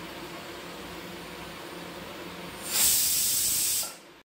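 Pressure cooker on a gas burner hissing steadily, then a louder blast of steam from its weight valve for about a second near the end: the cooker whistling as it comes up to pressure.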